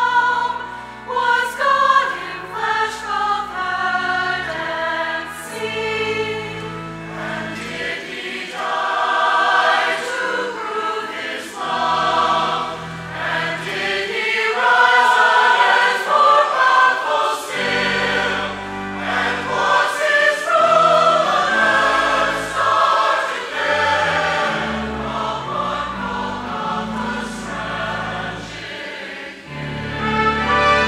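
Mixed church choir of men's and women's voices singing a sacred anthem in parts, the voices moving from note to note over sustained low notes.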